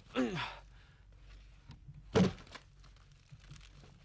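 A single dull thunk about two seconds in, among faint handling and rustling as things are moved around in bamboo baskets.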